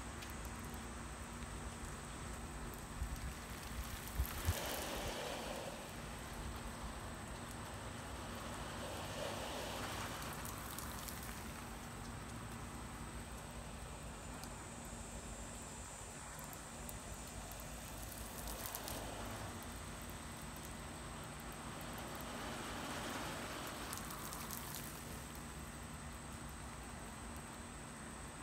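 Water from an oscillating lawn sprinkler pattering on grass, swelling and fading every few seconds. A few soft knocks about three to four seconds in.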